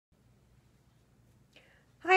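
Near silence: room tone with a faint steady low hum, and a short soft sound about one and a half seconds in, just before speech begins.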